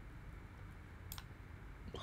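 A single faint computer mouse click about a second in, over a low steady hum.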